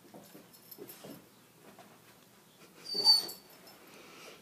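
Vizsla jumping and snapping at a flying insect: a few soft thuds in the first second, then a short, loud, high-pitched sound from the dog about three seconds in.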